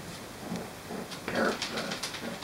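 Four-week-old Llewellin setter puppies play-wrestling. One pup gives a short, loud call a little past halfway through, among softer puppy sounds and small scuffling clicks.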